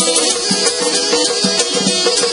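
Azerbaijani ashiq folk music: an instrumental passage led by the saz, with a steady percussive beat and no singing.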